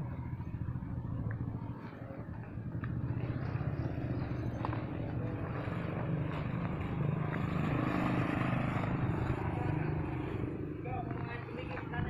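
Road traffic running steadily, with a passing vehicle that grows louder through the middle and fades again near the end.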